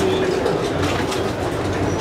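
Amtrak Coast Starlight passenger car rolling along the track, heard from inside the car: a steady rumble of wheels on rail with a low hum.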